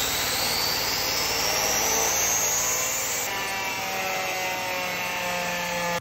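A 10-inch Tesla turbine running at full throttle with no load on compressed air: a thin whine climbs steadily in pitch through the first half as the rotor speeds up, over a loud, steady rushing hiss of air.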